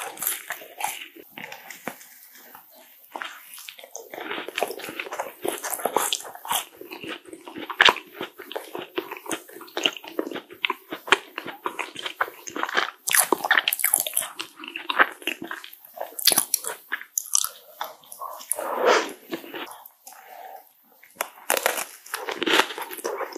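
Biting and chewing a green macaron: the shell cracks and crunches, followed by moist chewing, in irregular clusters of small crackles with a couple of brief lulls.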